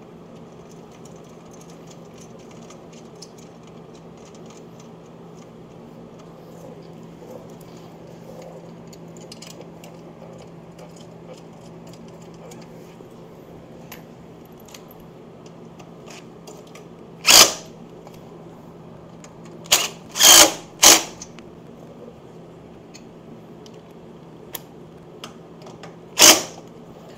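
Quarter-inch cordless impact driver run in short bursts, driving in the bolts of a motorcycle footboard bracket: one burst a little past halfway, three quick ones a couple of seconds later, and a last one at the very end. Between them there is a steady low hum with faint clicks of metal parts being handled.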